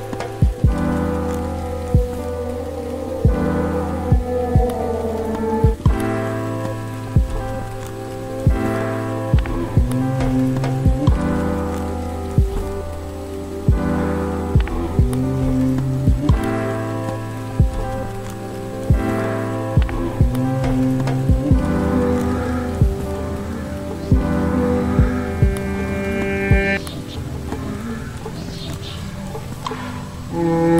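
Background music: a slow track of sustained chords that change every few seconds, over sharp percussive clicks.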